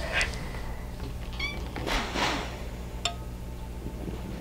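Steam iron pressing a folded cotton mask edge on a pressing board: two short hisses, with a brief high chirp between them and a small click near the end.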